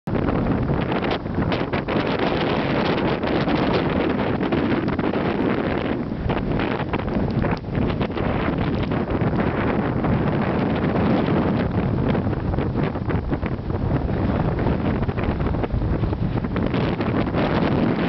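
Strong wind blowing across the camera microphone: a loud, continuous rumbling buffet with rapid crackling gusts throughout.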